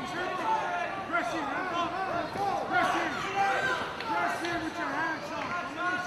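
Crowd noise at a cage fight: many voices shouting and calling out over one another, with no single voice clear.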